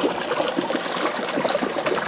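Steady splashing and trickling of water spilling out of the two PVC arms of an air-lift vortex compost tea brewer into its tank, the water lifted up the arms by air from an air pump.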